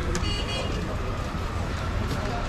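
Busy market-street ambience: a steady rumble of traffic and street noise, with faint vehicle horns.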